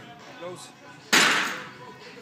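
A loaded steel barbell slammed back into the rack's hooks at the end of a high-bar squat set: one sudden loud clank a little after a second in, fading over about half a second.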